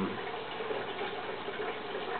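A steady rush of running water.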